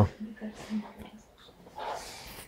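A pause between spoken phrases: a quiet room with a few faint, short murmured vocal sounds in the first second and a soft breath or voiced sound near the end.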